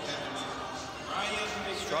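Mostly speech: a man's commentary voice, starting about a second in, over a steady large-hall background.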